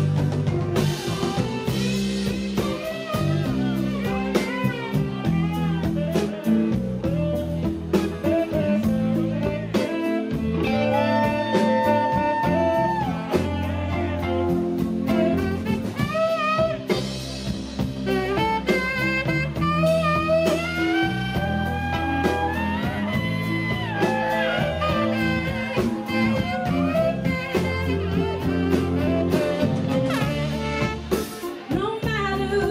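Live band playing an instrumental passage: a tenor saxophone and trumpet carry the melody with held, bending notes over electric guitar, bass and drums.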